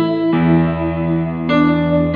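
Yamaha electronic keyboard playing slow, sustained chords, moving from an A chord toward an E chord. A new chord with a lower bass note is struck about a third of a second in, and more notes are struck about one and a half seconds in.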